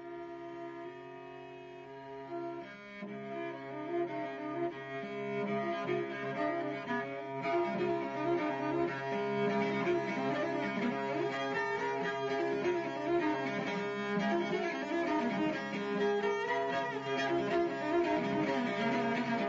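Solo cello played with the bow: a few slow held notes at first, then faster, busier passages that grow louder about three seconds in, over a low note held underneath.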